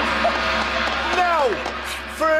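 Voices and background music, with a long falling vocal cry about a second in.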